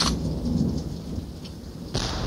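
Low rolling thunder over a steady hiss of rain, loudest at the start and dying away.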